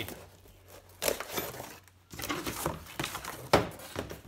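Tin snips cutting through corrugated cardboard, and the cardboard rustling and scraping as the cut-out piece is pulled free. The sounds come in irregular bursts, with a sharp click shortly before the end.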